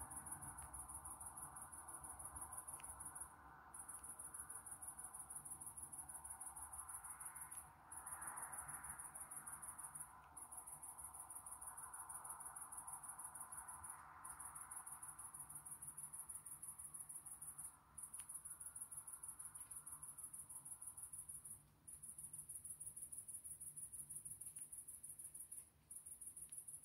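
An insect trilling steadily, a high, fast-pulsed buzz that breaks off briefly every three to four seconds and starts again, over a faint steady background hum.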